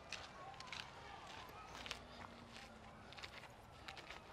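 Faint footsteps of people walking on a dry dirt and gravel path, soft irregular crunches about two a second.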